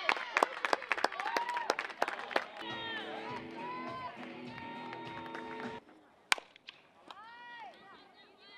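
Players clapping and shouting cheers, then a few seconds of music with held notes that cuts off suddenly. A single sharp crack follows, then more shouted calls.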